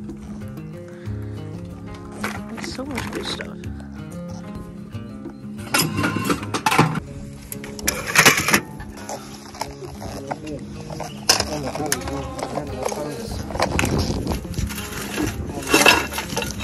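Background music, with several clanks of metal junk being handled, one of the loudest about eight seconds in.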